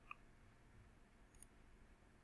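Near silence: room tone, with one or two faint clicks.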